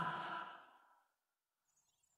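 The end of a radio station ID fades out in the first half second, its last notes ringing away, then dead silence.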